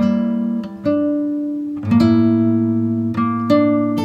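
Background music: an acoustic guitar playing slow plucked notes and chords, a new one struck every second or so and left to ring.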